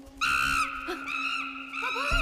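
Macaque calling: a run of short, high, arching calls that starts just after the beginning and repeats about twice a second, over a steady low tone.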